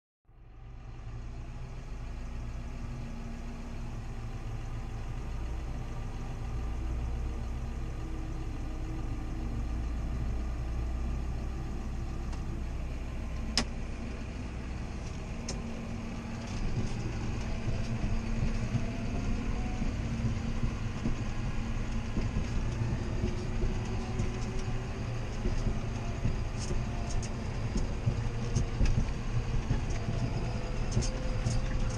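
John Deere 7530 AutoPowr tractor's six-cylinder diesel heard from inside the cab, running steadily as the sound fades in at the start. There is a single sharp click about halfway through. From a little past halfway the sound is louder and rougher, with frequent small rattles and knocks as the tractor drives over the field.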